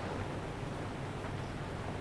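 Room tone: a steady low hum with a faint hiss, and no distinct clicks or knocks.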